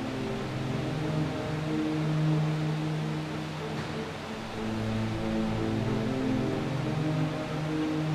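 Background music of slow, held low chords that shift every couple of seconds over a soft hiss.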